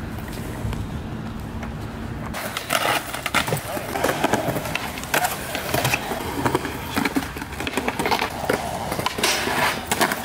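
Skateboards on a concrete skate area: wheels rolling with many sharp clacks of boards popping and landing, starting after a steady low hum in the first two seconds or so.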